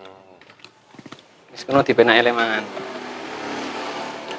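Men's voices speaking Javanese in short phrases, with a few faint clicks about a second in and a steady background noise in the second half.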